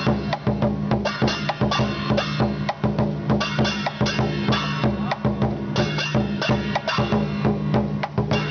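Lion dance percussion: a large drum beaten in a fast, steady rhythm, with clashing cymbals ringing over it.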